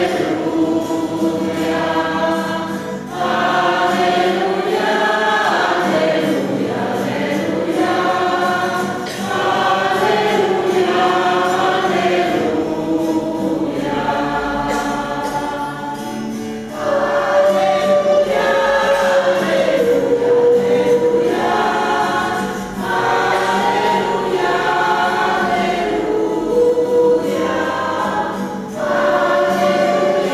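Church choir singing the Gospel acclamation at Mass, in phrases a few seconds long with brief breaks between them.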